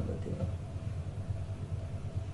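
A steady low rumble, with the last of a voice fading out right at the start.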